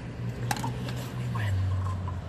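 A car engine running with a steady low hum whose pitch drops about a second and a half in. There is a single sharp click about half a second in.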